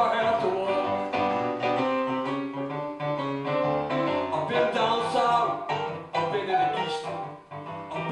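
Live song played on a Roland stage piano, with electric guitar and a man singing.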